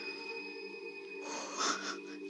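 A sustained chord of quiet background music holds steady, and a woman takes a short, audible breath about a second and a half in.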